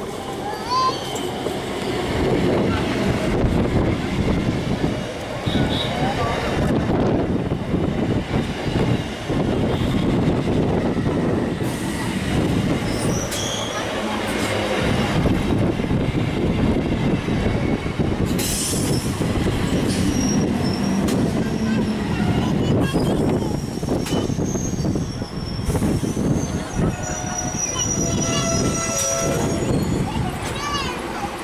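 Indian Railways EMU electric local train running in alongside the platform, with a steady rumble and clatter of steel wheels on the rails. High thin wheel and brake squeals come in the later part as it slows to a stop.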